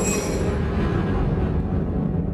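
Dense, steady rumbling from a documentary film's opening soundtrack, heavy in the bass, with high ringing tones that fade over the first half second.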